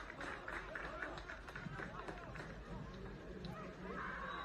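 Faint on-pitch voices of footballers calling and shouting to each other over low outdoor field ambience, with a few short sharp knocks.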